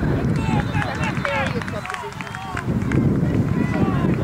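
Several distant voices talking and calling over one another in short overlapping bursts, over a steady low rumble of wind on the microphone.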